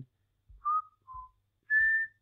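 A person whistling three short notes: a middle one, a lower one, then a higher note held a little longer.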